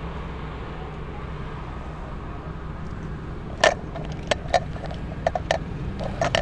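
Low, steady rumble of motor-vehicle engines at slow street speed. From a little past halfway, a run of sharp, irregular clicks or knocks is the loudest sound.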